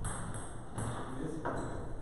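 A table tennis ball bouncing and being tapped between points, a few light, irregularly spaced clicks.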